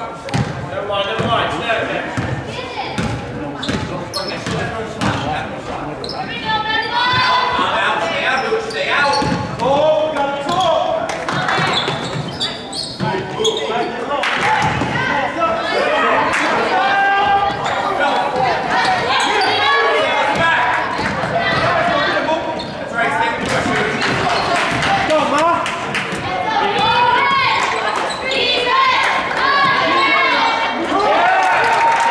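Basketball dribbled and bouncing on a hardwood gym floor, under a steady mix of shouting voices from players, coaches and spectators, all echoing in a large gymnasium.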